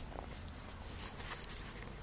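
Faint, steady outdoor background noise with a soft click near the start and another faint tick shortly after.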